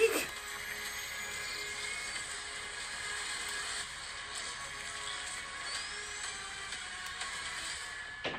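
Movie trailer soundtrack playing at a moderate level: music with a steady texture of sci-fi sound effects and a faint rising whistle about six seconds in.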